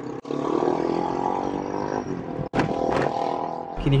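A man's long, raspy, growling vocal sounds, held at a low steady pitch in two stretches with a break about two and a half seconds in. They come from congested airways, an allergic reaction to a cat that he jokingly calls his asthma.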